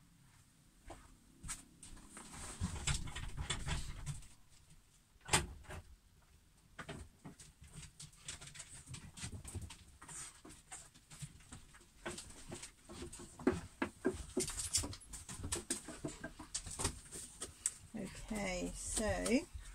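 A puppy making noises elsewhere in the house, among scattered light clicks and knocks, with one sharp knock about five seconds in.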